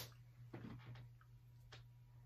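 Near silence with quiet mouth sounds of someone chewing food: one sharp click right at the start, then a few faint soft ticks.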